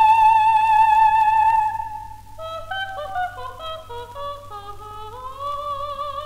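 Old recording of a soprano with orchestra: a long high note with vibrato is held and falls away about two seconds in, then a run of short, quick notes steps up and down.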